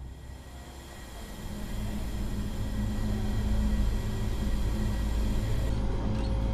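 Road traffic rumble, the engine and tyre noise of a truck and car driving, steady and growing louder about a second in. Near the end it gives way to a quieter steady hum with a faint tone.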